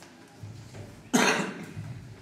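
A single loud cough about a second in, sudden and dying away within half a second.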